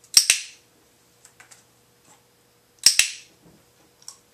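Dog-training clicker pressed twice, about three seconds apart, each press a sharp two-part click-clack. It is the marker for a correct response, followed by a food reward.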